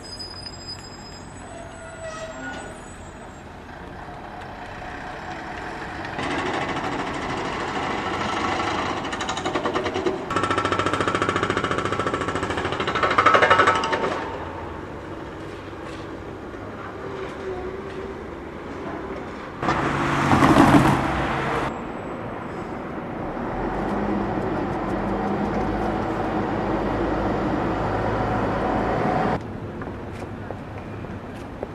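Street traffic noise by tram-track construction work: vehicles passing in several stretches that swell and fade, with a short loud burst about twenty seconds in and a steady low rumble near the end.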